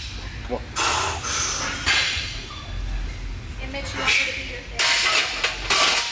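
Forceful, hissing breaths of a lifter straining through bench-press reps with a 225-pound barbell, about five sharp exhales in short bursts.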